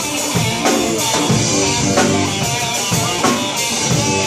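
Live rock band playing an instrumental stretch of a hard rock song with no vocals: drum kit beating steadily under electric guitar, bass and keyboards.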